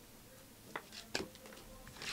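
Panini Select trading cards being handled and flipped through by hand: three faint, short clicks as the cards slide and catch against each other.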